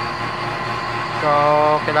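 Electric refrigeration vacuum pump running steadily, a low hum with a thin whine over it, evacuating an air conditioner's refrigerant lines to pull out the air that got in through a leak.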